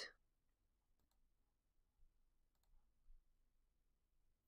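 Near silence with a few faint mouse clicks, the loudest about three seconds in.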